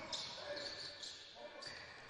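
Faint court sound of a basketball game in a large, near-empty hall: players moving on the hardwood and the ball being bounced, with no crowd.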